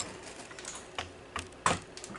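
A few sharp clicks and taps, like fingers or nails knocking on a hand-held camera, spread out with the loudest about three-quarters of the way through.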